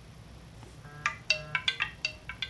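Mobile phone sounding its ringtone: a quick run of short, clear notes, several a second, starting about a second in.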